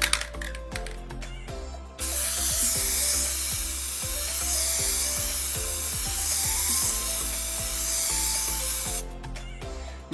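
Aerosol can of Plasti Dip rubber coating spraying in one long, continuous hiss, starting about two seconds in and stopping about a second before the end, over background music.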